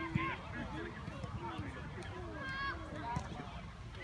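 Distant, overlapping voices of people calling out across a football pitch, over a steady low rumble.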